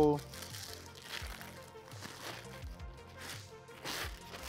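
A fabric drawstring bag being handled and opened, with a soft rustling, over quiet background music.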